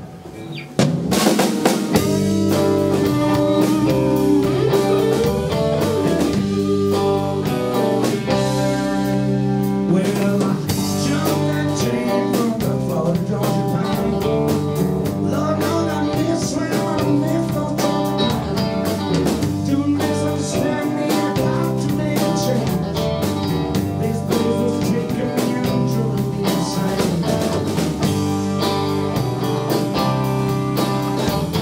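Southern rock band playing live, with electric guitars, bass guitar and drum kit. They come in about a second in and play the instrumental opening of the song.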